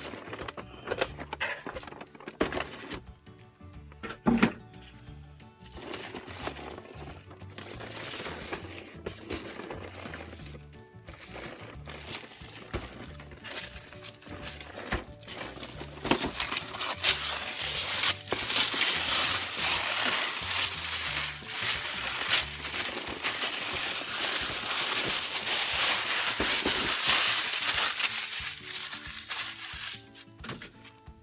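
Plastic shrink wrap crinkling and tearing as it is pulled off a boxed toy. It is patchy at first and becomes loud and nearly continuous about halfway through, with music in the background.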